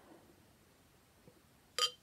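A glass beer bottle clinks once against the rim of a drinking glass near the end, a short ringing chink, during a quiet pour of beer into the glass.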